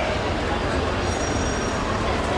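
Steady, loud din of idling and passing vehicles at a busy curb, a continuous low rumble with indistinct voices mixed in.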